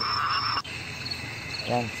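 Night insects, crickets, chirring steadily in a high chorus. About half a second in, the chorus changes abruptly to a different steady high pitch.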